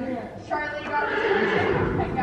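A horse whinnying for about a second in the second half, over a voice talking.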